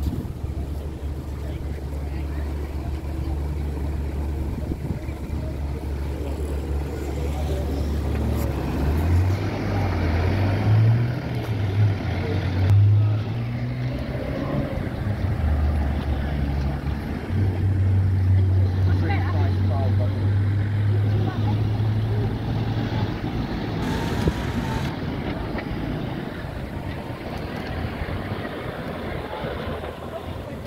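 2007 Nissan Navara pickup's diesel engine idling steadily, then rising and falling in pitch from about a third of the way in as the truck pulls away and drives off, fading near the end. People talk nearby.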